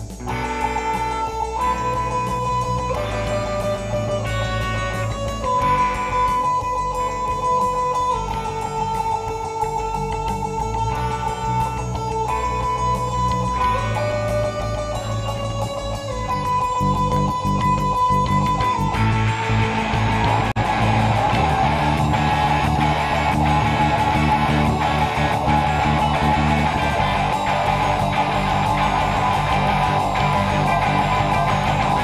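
Live indie-rock band with keyboard, bass and two electric guitars playing an instrumental intro: a melody of long held notes moving every second or two over bass, then the full band with electric guitars comes in louder about two-thirds of the way through.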